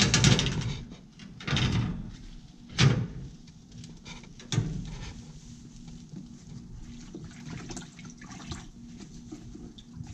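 A metal drip-tray grate being set and shifted on a stainless steel soda-fountain trough: scraping and rattling bursts over the first few seconds with a sharp knock about three seconds in and another clatter soon after. A low steady hum continues underneath.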